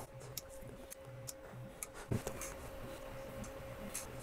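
Artillery Sidewinder X2 3D printer running its auto bed-leveling routine: faint stepper-motor hum with a steady whine and scattered light ticks as the print head moves and probes the bed, one tick a little louder about two seconds in.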